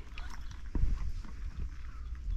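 Footsteps on a stone-paved path, a few short knocks over a steady low rumble.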